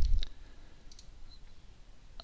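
Computer mouse buttons clicking, picked up by the desk microphone: a low thump right at the start, then a few faint clicks about a second in.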